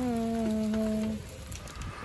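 A person humming a steady "mm" on one held pitch for about a second, then fading out, followed by a few faint clicks.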